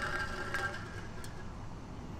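Faint, steady mechanical hum with a few held tones, like an engine or machine running somewhere in the background.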